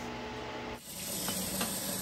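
Kitchen tap running into a stainless steel sink and over glass bottles, a steady hiss of water with a brief break a little under a second in.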